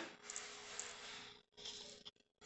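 Quiet room tone with a faint steady hum and a few soft ticks.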